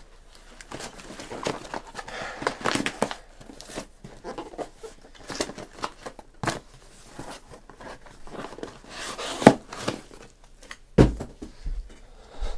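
Crinkling and rustling of foil card-pack wrappers being handled, with scattered clicks and a couple of sharper knocks, the loudest about nine and a half seconds in.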